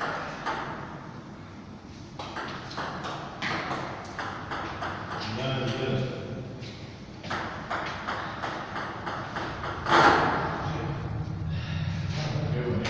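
Table tennis ball clicking off the paddles and the table in two quick runs of several hits each, with voices in between and a loud burst about ten seconds in.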